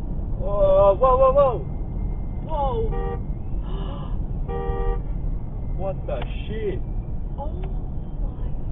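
Steady road and engine rumble of a car driving at highway speed, heard from inside the cabin. Over it a person's voice rises and falls, loudest about half a second to a second and a half in, with more short vocal sounds later and two brief steady tones around three and four and a half seconds.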